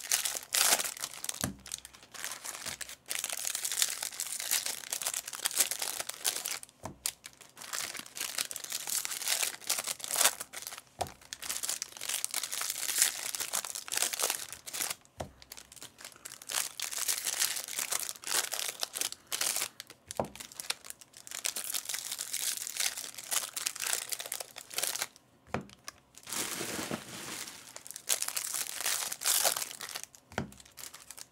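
Foil wrappers of baseball card packs crinkling and tearing as they are ripped open by hand, pack after pack, with brief pauses every few seconds.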